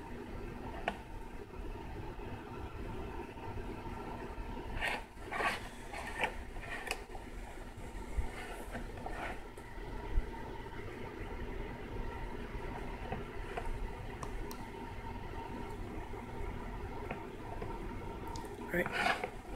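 Etching solution sloshing faintly in a plastic tray as the tray is rocked to agitate a copper circuit board, with a few soft handling rustles and clicks about five to seven seconds in, over a steady low room hum.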